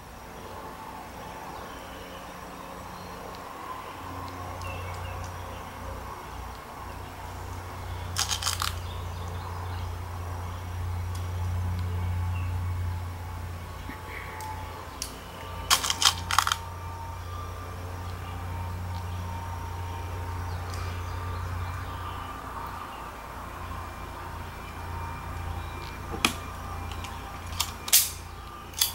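Sharp metallic clicks from handling a Bersa Thunder .22 pistol and its magazine: a few clicks about eight seconds in, a quick cluster around sixteen seconds, and more near the end. A steady low rumble runs underneath.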